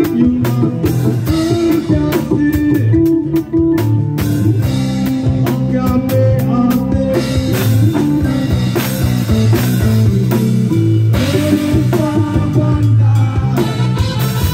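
Live band playing a song on drum kit, guitars and keyboard, with a steady drum beat and bass line under the melody.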